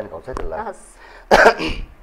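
A man clears his throat once with a short, loud rasp about halfway through, after a couple of spoken words, readying his voice to sing.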